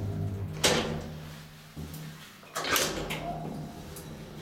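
Graham Brothers traction elevator car coming to a stop: the drive's steady hum fades out in steps, with a sharp clack about half a second in and a louder clattering clunk just before three seconds.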